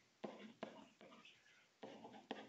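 Near silence: room tone, with a few faint brief scratchy sounds in the first second.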